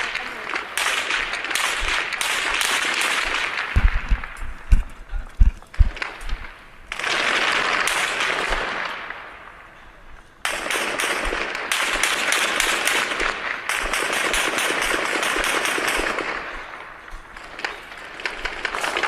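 Gunfire in close combat: scattered sharp shots and short bursts, with a cluster of heavy thumps about four to six seconds in. A loud rushing hiss runs under the shots and cuts in and out abruptly.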